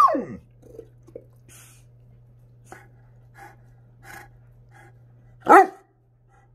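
Newfoundland dog giving two deep barks: one right at the start that slides down in pitch, and a louder, shorter one near the end.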